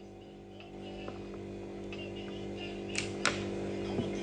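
A steady low hum that grows a little louder about a second in, with two sharp clicks close together about three seconds in.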